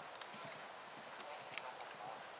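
Hoofbeats of a horse galloping cross-country on grass and dirt, a steady run of dull thuds, with one sharper click about one and a half seconds in.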